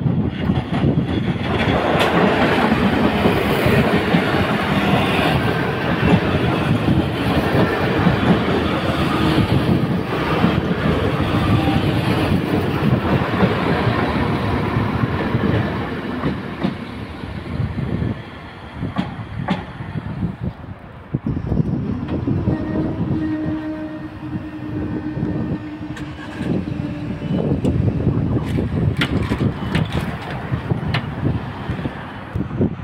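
Northern Ireland Railways CAF diesel multiple unit passing over a level crossing close by: engine and wheel noise with a clickety-clack over the crossing rails, dying away after about sixteen seconds. A steady low hum follows for several seconds in the latter part.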